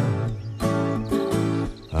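Music: an acoustic guitar playing a short instrumental phrase between the sung lines of a Brazilian country song, with brief breaks between its notes.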